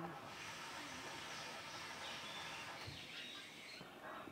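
Faint outdoor ambience: a steady high hiss with a few short, thin bird chirps around the middle of the clip and again near the end.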